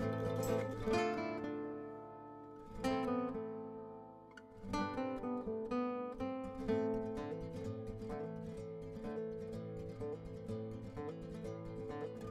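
Background music on plucked acoustic guitar: notes struck and left to ring, easing off to a lull about four seconds in before a new phrase begins.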